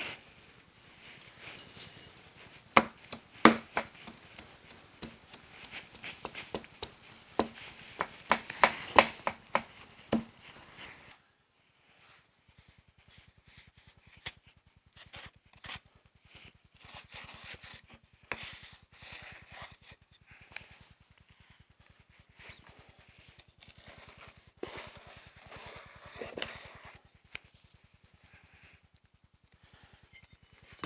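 Oil-bonded foundry sand being rammed into a steel molding flask with a wooden rammer: a series of sharp, uneven knocks with the crunch and rustle of packed sand, over a steady background buzz whose source is unknown. The sound drops much quieter about eleven seconds in.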